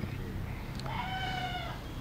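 A single animal call, pitched and about a second long, beginning a little before the middle.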